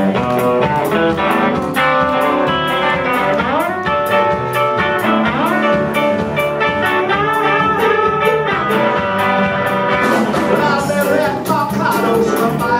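Live band playing an instrumental intro: electric guitar, tenor saxophone, keyboard, electric bass and drum kit, with a steady drum beat and some sliding notes.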